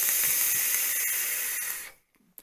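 A vaper drawing on an Indulgence Mutation MT-RTA rebuildable tank atomizer on a box mod, giving a steady airy hiss of air pulled through the atomizer's airflow. It lasts nearly two seconds and fades out near the end.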